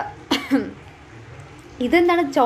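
A woman gives a short cough or throat clearing, then resumes talking near the end.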